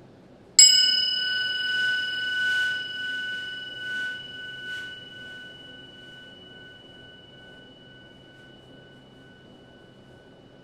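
A small brass disc cymbal lying on a drumhead is struck once and rings at a high pitch, with two clear steady tones. The ring swells and wavers a few times over the next few seconds as the disc is turned by hand against the drumhead, then fades slowly.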